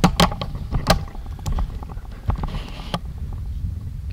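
Low rumble of handling noise on a handheld camera's microphone as it is swung around, with a few sharp knocks and clicks, the loudest in the first second.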